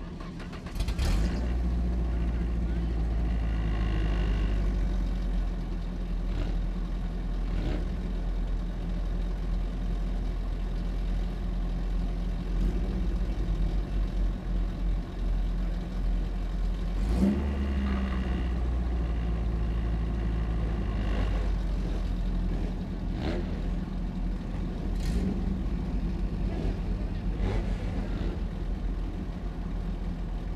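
A Spec Racer Ford race car's engine catching about a second in, then idling loudly with a few short revs.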